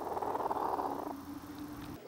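A cheonggye hen (black, blue-egg-laying chicken) making a low, rapid purring trill, loudest for about a second and then trailing off fainter.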